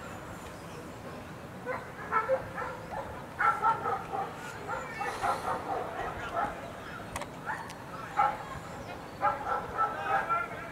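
German shepherd dog barking in short, irregular bursts, with voices in the background.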